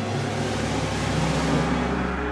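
Orchestral film score: a dense, low, sustained swell of many held notes that grows a little louder toward the end.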